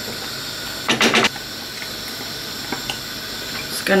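Pans of mince and vegetables simmering and bubbling on a gas hob, a steady hiss. About a second in comes a brief, louder scrape of a wooden spoon stirring the mince in the pan.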